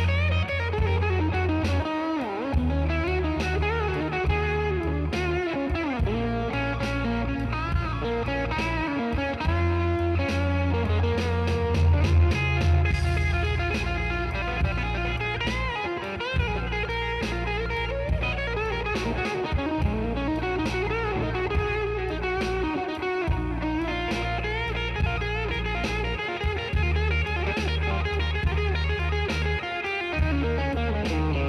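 Slow-blues electric guitar solo on a Telecaster-style guitar, with single-note lines and string bends that bend the pitch up and back down. A steady bass line runs underneath.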